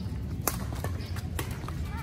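Badminton rackets striking a shuttlecock in a rally: two sharp cracks about a second apart, with a few fainter clicks between.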